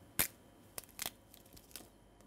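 Crab shell cracking and crunching as its carapace is pried off with metal forceps: a few short, sharp cracks, the loudest a moment in, with smaller ones after.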